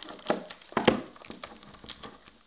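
Scissors and fingers working at tight black plastic tape wrapped around a bundle of trading cards: crinkling and rustling with a few sharp snaps and clicks, the loudest about a second in.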